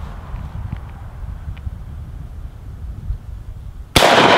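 A low steady rumble with a few faint ticks, then right at the end a single sharp shot from a Marlin 1894 Cowboy lever-action rifle in .45 Colt.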